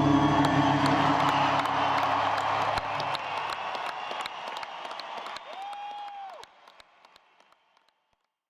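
Concert audience applauding and cheering as the last acoustic guitar chord rings out and dies away over the first few seconds. A long whistle from the crowd comes near the end, and then the applause fades to near silence.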